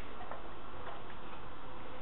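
Steady background noise with a few faint, irregular ticks.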